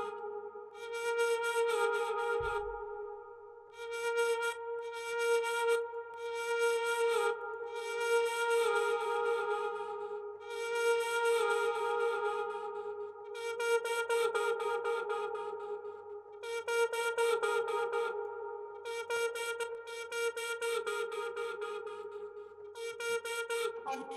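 Output Exhale vocal instrument playing a sustained pitched vocal pad, one held note with overtones. An airy upper layer over it is cut on and off in a rhythmic chopping pattern.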